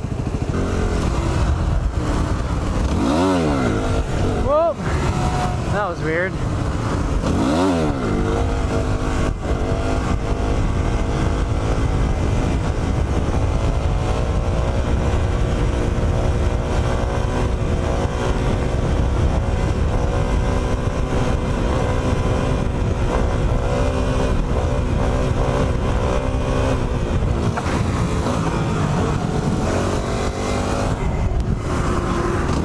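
Yamaha WR250 dual-sport's single-cylinder engine revving up and down several times in the first eight seconds as the bike pulls away and shifts, then running at a steady pitch while cruising, with wind rushing over the microphone.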